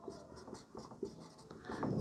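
Marker pen writing on a whiteboard: faint, short scratching strokes and light taps as letters are written.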